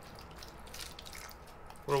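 Water trickling faintly and evenly from a plastic measuring jug onto Jiffy peat seed-starting pellets sitting in a plastic tray.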